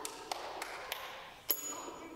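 Toy keyboard-xylophone: keys pressed so that its metal bars are struck, giving a few light taps and then a louder, high ringing ping about one and a half seconds in.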